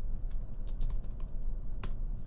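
Typing on a computer keyboard: irregular key clicks, one stronger click near the end, over a low steady hum.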